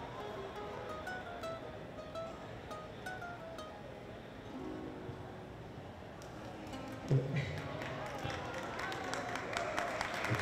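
Nylon-string classical guitar playing a plucked single-note melody. About seven seconds in, a man's voice comes in singing over it, louder than the guitar.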